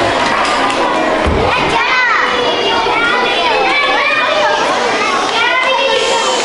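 A hall full of children's voices at once: many kids talking and calling out over one another, with a few high voices standing out about two seconds in and again near the end.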